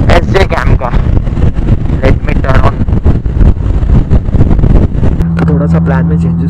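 Motorcycle ridden at road speed, its engine running under a heavy low rush of wind and road noise on the mounted microphone. About five seconds in, a steady low engine hum comes up clearly.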